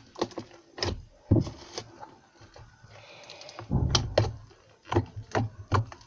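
Soft slime being pressed, slapped and kneaded by hand on a tabletop: a run of irregular clicks and knocks, with a heavier thump about four seconds in.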